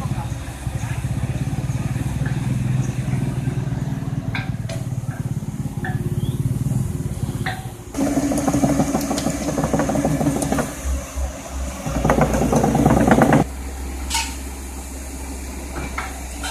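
CAT crawler excavator's diesel engine running steadily. About halfway through it grows louder with a dense, rapid rattle as the steel tracks roll over the paving. The rattle cuts off suddenly a couple of seconds before the end.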